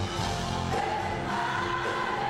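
Live band music: several voices singing together over acoustic guitar.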